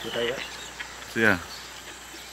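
Insects making a steady, faint, high-pitched sound in the background, with two short vocal sounds from a man, one near the start and a louder one a little past halfway.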